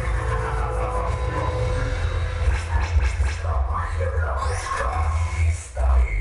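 Dance music played loud through a large mobile sound system, heavy on the bass, with an MC's voice over it. A falling sweep comes in the first second, and the sound drops out briefly just before the end.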